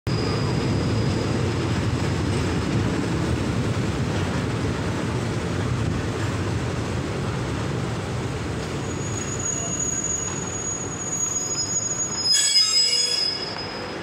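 Passenger train rumbling, heard from aboard as it slows into a halt. Thin high squealing sets in about nine seconds in, and a brief loudest burst of shrill squealing comes near the end as the brakes bring the train to a stop.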